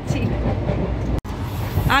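Steady low rumble of the Netaji Express passenger train running, heard from inside the coach. The sound cuts out sharply for an instant about a second in, and a voice begins near the end.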